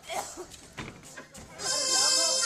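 Short wavering voice-like cries with a few sharp knocks, then stage music with a sustained reed-like melody comes in loudly about one and a half seconds in.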